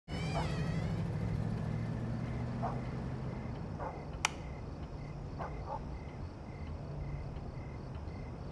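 Night-time indoor ambience with a cricket chirping in a steady repeating pattern over a low hum. A single sharp click comes about four seconds in as a door is pushed open.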